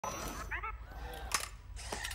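Robot's mechanism working over a low steady hum: a short burst of electronic warbling chirps, then two sharp mechanical clicks near the end.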